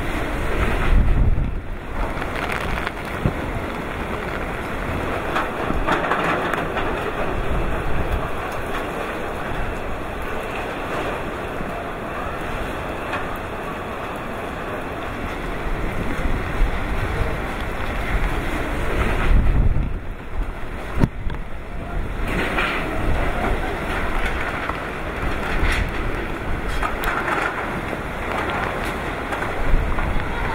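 Strong gusty wind with rain, buffeting the microphone, with heavier gusts about a second in and again about twenty seconds in.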